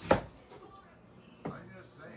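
A single heavy cleaver chop through a firm vegetable onto a cutting board, sharp and loud, just after the start.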